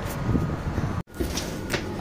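Footsteps and knocks on a commuter train's metal entry step as people climb aboard, over a low rumble. The sound drops out sharply for a moment about halfway through.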